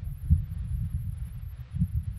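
Low, uneven rumble with two soft thumps, one about a third of a second in and one near the end, picked up through a handheld microphone.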